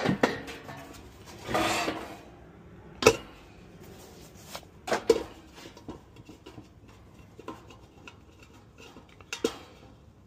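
Metal clanks and scraping from a hand tool being worked on the hub of a furnace blower wheel inside its sheet-metal housing. Sharp knocks come just after the start, about three seconds in, about five seconds in and near the end, with a longer scraping rub just under two seconds in.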